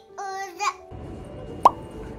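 A toddler's short, high-pitched babbling vocalization, followed about a second and a half in by a single brief pop.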